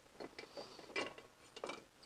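An H4 halogen headlight globe being unclipped by hand from the back of the headlight housing: a few faint, irregular clicks and scrapes of metal and plastic.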